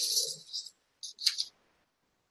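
A person's brief, breathy laugh, followed by a second short breath about a second in.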